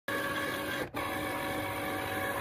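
Cricut cutting machine running, its carriage motors giving a steady electric whine as the blade head moves over a printed design, with a brief pause about a second in.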